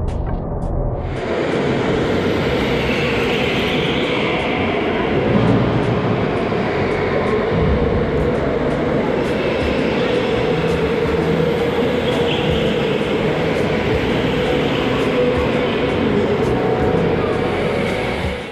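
Electric go-karts running on an indoor concrete track: a loud, steady rushing hum of motors and tyres that sets in about a second in.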